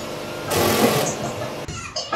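A handheld power tool runs for about a second, then cuts off suddenly.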